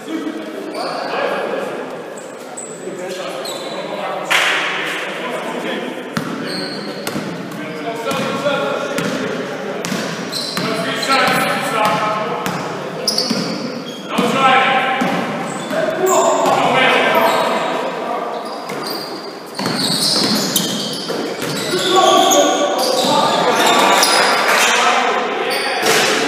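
Basketball dribbled on a hardwood court during a game, with repeated bounces and players' voices ringing around a large sports hall.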